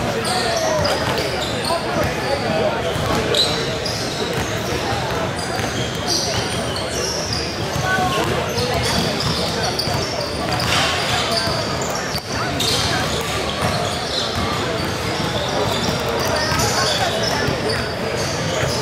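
Basketball bouncing on a hardwood gym floor, under steady, unintelligible chatter of voices in a large, echoing hall.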